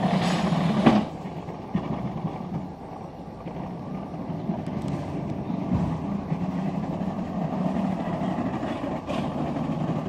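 Steady mechanical rumble of a gondola cableway running, with a few sharp clacks: the loudest about a second in, and fainter ones shortly after and near the end.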